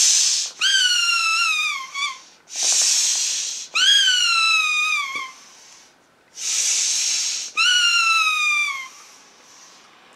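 A squeaky Christmas pudding toy squeezed three times: each time a rush of air is followed by a long squeaky whistle that slides down in pitch.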